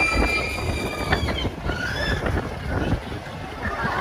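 Wind buffeting a phone microphone as a fairground ride spins, a steady low rumble. Over it a long, high-pitched held tone cuts off about a second in, followed by a few shorter high tones.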